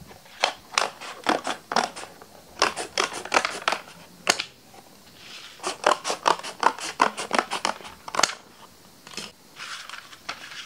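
Scissors cutting through a sheet of brown cardboard in three runs of quick, crisp snips, about three to four a second, with short pauses between the runs. Near the end the cut strips are handled and stacked, softer rustles of card.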